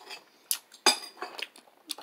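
A few short, sharp clicks and knocks, the clearest about half a second and about a second in, as a glass jar is drunk from and handled.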